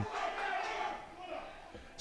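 Faint, distant shouting of hurlers and a small crowd around the pitch, fading away in the second half.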